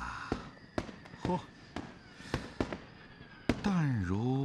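Scattered firecracker bangs at irregular intervals, with the loudest coming near the end, over a background of festive crowd voices.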